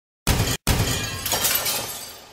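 Glass shattering, used as an intro sound effect: two sudden crashes in quick succession, the second trailing off in a long scatter of breaking glass.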